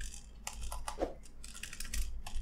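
Typing on a computer keyboard: a run of separate, irregular keystrokes.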